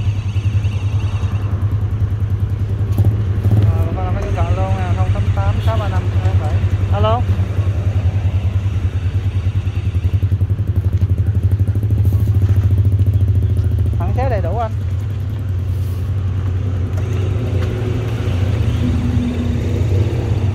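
Mitsubishi 5 hp single-cylinder petrol engine on a Super Best 53 power sprayer, running steadily with an even low putter.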